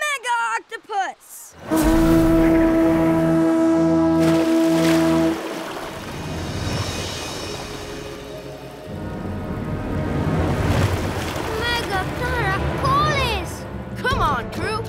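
Animated-cartoon soundtrack: a short burst of voices, then a loud, steady held tone for about three and a half seconds, then music and effects, with voices coming back near the end.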